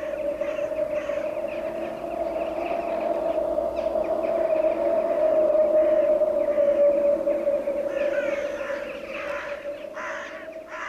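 A sustained droning tone held steadily throughout, swelling through the middle and easing off near the end, with faint high chirps scattered above it.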